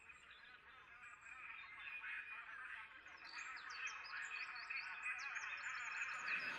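Faint chorus of small birds chirping, many short high calls, fading in about a second in and growing slightly louder.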